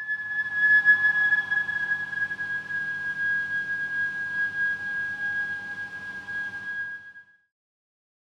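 Eerie film-score sound: a single high, steady whistling tone that holds one pitch for about seven seconds over fainter sustained tones and a low hiss. It cuts off about seven seconds in.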